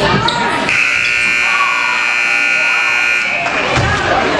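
Gym scoreboard buzzer sounding one steady tone for about two and a half seconds, starting just under a second in: the end-of-period horn as the game clock reaches zero at the end of the first quarter.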